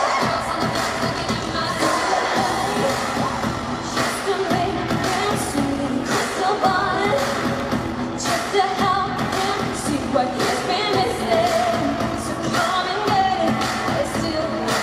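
Live pop music: a female vocal group singing into microphones over a band with a beat, recorded from the audience.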